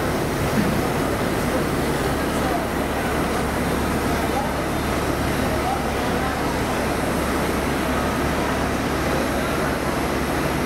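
Steady hum of standing locomotives on a busy railway platform, under indistinct chatter of passengers.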